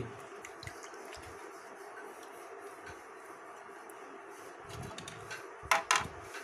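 Low room noise with faint handling of raw potatoes on a plastic plate, and one brief, sharper sound near the end.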